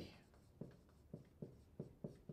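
Marker writing on a whiteboard: about five short, faint strokes as a word is written out.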